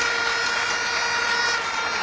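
Crowd applauding: a steady, even wash of clapping and crowd noise, with a few steady high tones held through it.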